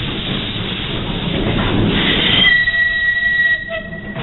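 Narrow-gauge Borsig Bn2t steam tank locomotive running, with a loud hiss of steam beside its wheels. About halfway through, a steady high squeal takes over as the wheels grind around a curve.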